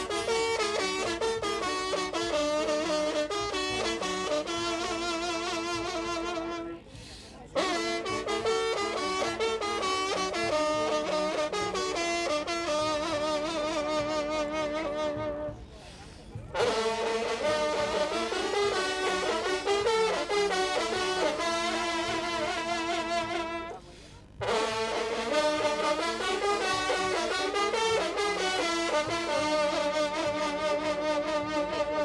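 An ensemble of French hunting horns (trompes de chasse) playing a fanfare in unison, the held notes wavering. The music comes in four phrases separated by brief pauses, about a quarter, half and three quarters of the way through.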